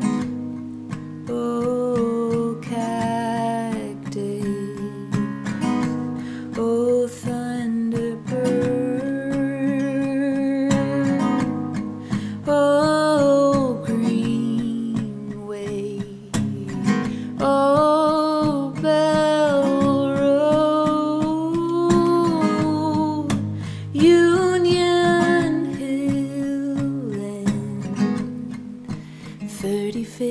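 Takamine acoustic guitar strummed, with a woman singing over it.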